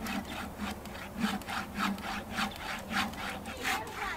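Hand saw cutting through a log of firewood on a sawhorse, in quick, even back-and-forth strokes, several a second.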